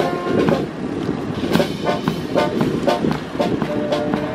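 Naval brass band playing a march, its drum and cymbal strokes on a steady beat carrying the sound with the brass held underneath; the brass melody comes through more clearly near the end.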